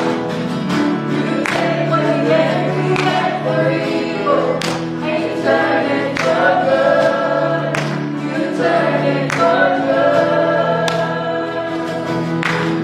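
Live worship song: two women singing with acoustic guitar and keyboard accompaniment.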